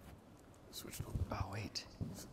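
Quiet, off-microphone speech close to a whisper, starting about two-thirds of a second in.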